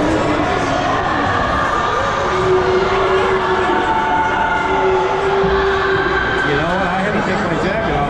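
Indistinct chatter of several spectators' voices in an ice rink arena.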